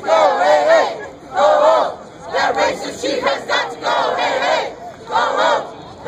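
Crowd of protesters shouting a chant in unison, short loud phrases repeated in a steady rhythm with brief gaps between them.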